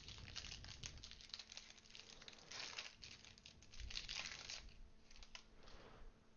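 Foil wrapper of a Prizm basketball trading-card pack crinkling and tearing as it is opened and the cards are pulled out. The crinkling is faint and comes in irregular bursts, loudest about two and a half and four seconds in.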